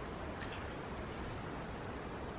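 Steady background noise, a low rumble with an even hiss, with no distinct event apart from a faint brief tick about half a second in.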